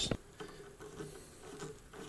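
Quiet room tone with a faint steady hum and a few light soft ticks.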